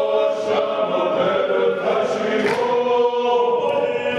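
Georgian folk choir singing together, several voices holding sustained chords that change pitch about two and three seconds in.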